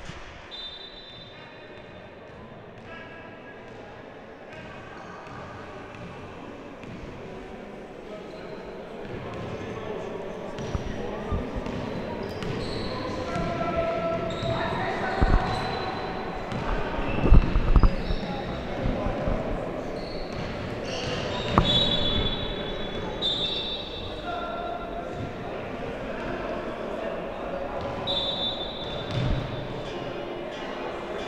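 A basketball bouncing and hitting the hardwood floor of an echoing gym, with players' voices. A few louder knocks come around the middle.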